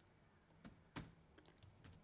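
A few faint computer keyboard keystrokes, each a short click, the loudest about a second in.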